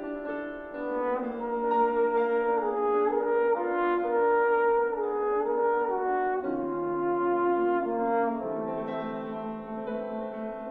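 Tenor trombone playing a melodic line of held notes with piano accompaniment, the trombone growing louder about a second in and moving to lower notes in the second half.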